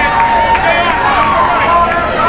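Crowd of spectators talking and shouting, many voices overlapping at a steady loud level.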